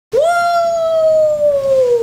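A young woman's voice holding one long, loud 'oooo' like a howl. It jumps up at the start, then sinks slowly in pitch.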